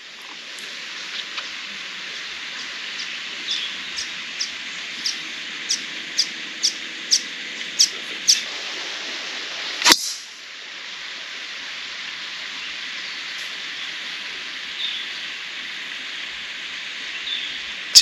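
A bird calls in a run of short, sharp notes, about two a second, growing louder over several seconds. About ten seconds in, a golf driver strikes the ball off the tee with a single sharp crack.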